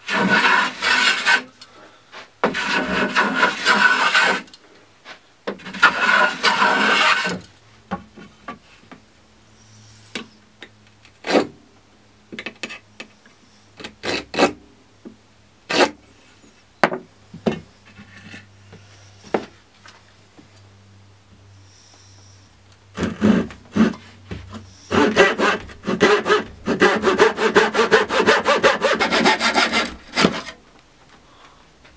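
Woodworking by hand on pallet wood: three long rasping strokes early on, then scattered knocks and taps as the boards are handled and marked. Near the end comes a long run of quick back-and-forth strokes of a backsaw cutting off a board's end.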